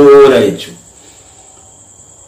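A man's voice finishes a word about half a second in, then falls into a pause. The pause holds only a faint, steady, high-pitched tone.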